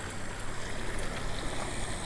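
Steady rushing hiss of a small creek running over a shallow riffle, with a low rumble of wind on the microphone.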